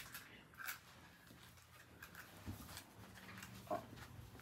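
Near silence: quiet room tone with a few faint, brief sounds and a soft "oh" near the end.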